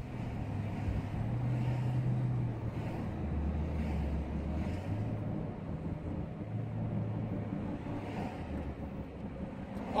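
Low, steady engine and road rumble heard from inside a car's cabin in traffic, with a low hum that shifts up and down in pitch a few times.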